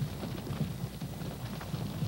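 Hooves of a caribou herd walking over the barrens: an irregular patter of soft knocks and clicks.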